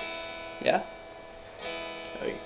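Electric guitar chord strummed and left ringing, then strummed again near the end.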